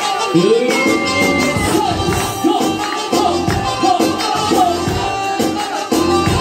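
Loud live band music at dance tempo: a steady drum beat under sustained keyboard notes and a melody line that bends up and down.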